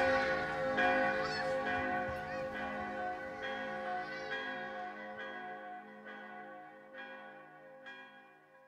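Church bells ringing, a new strike about every second over a long hum of overlapping tones, fading steadily away.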